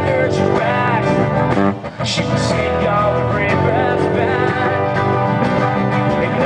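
Live acoustic guitar music through a PA, with a voice singing over the strummed chords; the music drops out briefly about two seconds in.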